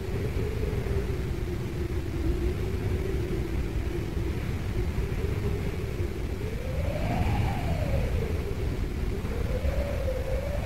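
Dense low rumble under a single wailing tone that wavers slowly, gliding higher about seven seconds in, falling away and rising again near the end: a dark noise-and-drone outro closing a death metal demo tape.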